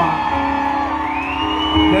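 Live band holding soft, steady chords under the between-song talk, with a rising whoop from the crowd about a second in.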